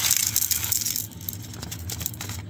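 Small gold nuggets and flakes sliding off a folded sheet of paper and clicking into a plastic weighing tray, with the paper rustling. Loudest in the first half, then tapering off to a few scattered clicks.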